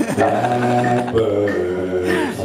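Didgeridoo playing a steady low drone, its overtones shifting about a second in.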